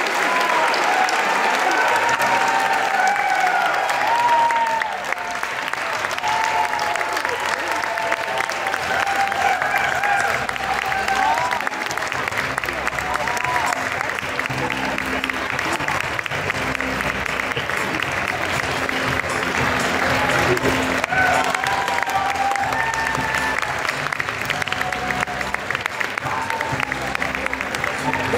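Sustained audience applause, with music playing underneath throughout.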